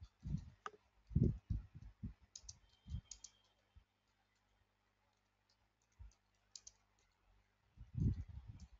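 Typing on a computer keyboard: irregular runs of keystroke clicks and thuds, with a lull around the middle before the keystrokes pick up again.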